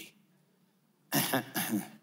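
Near silence, then about a second in a man's short wordless vocal sound into a handheld microphone: a few quick pulses lasting under a second.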